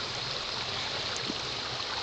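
Shallow stream water running over a stony bed, a steady rushing hiss.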